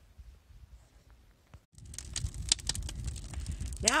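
A wood fire crackling and popping in the open firebox of an outdoor wood furnace, burning pallet wood and pine logs, with a low rumble of flame under the snaps. It starts sharply about halfway in, after a faint low hush.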